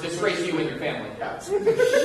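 Speech with light chuckling laughter.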